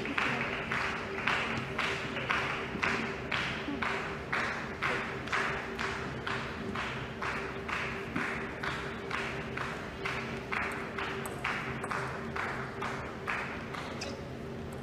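Spectators clapping in unison in a steady rhythm, about two claps a second, fading and stopping near the end. A faint steady hum lies underneath.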